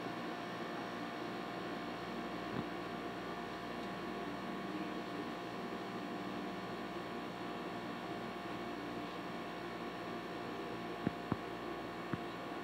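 Steady hiss with a low electrical hum, with no clear event in it; a couple of faint clicks near the end.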